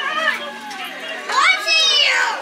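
Children's voices and chatter, with one child's high-pitched call rising and falling about a second and a half in.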